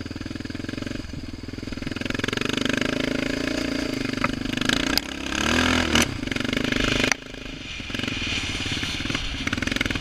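Yamaha Raptor 700R's single-cylinder four-stroke engine revving as the quad pushes through a mud hole, building from about two seconds in and loudest between five and seven seconds in, then dropping back sharply to a lower steady run.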